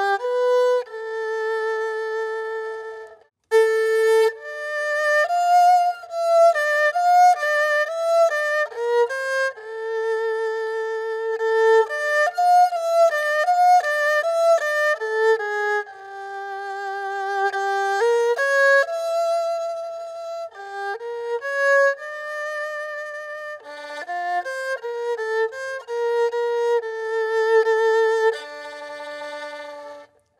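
Solo erhu, the two-string Chinese bowed fiddle with a snake-skin-covered sound box, playing a slow melody of sustained bowed notes with vibrato. There is a brief pause about three and a half seconds in.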